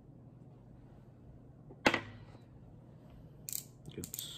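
A single sharp click about two seconds in, then a few lighter clicks near the end: makeup containers or tools being handled.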